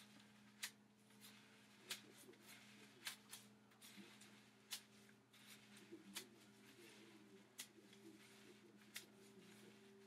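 Near silence with faint, irregular light clicks, about one a second, from a comb and fingers working through wet, soapy hair, over a faint steady low hum.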